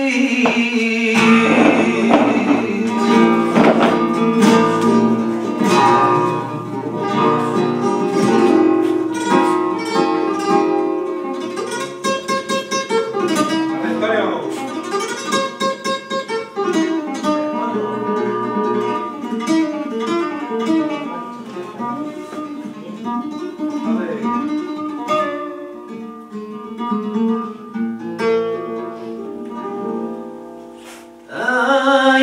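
Flamenco guitar playing alone between sung verses of a taranto, mixing struck chords with picked runs. A man's sung flamenco line ends about a second in.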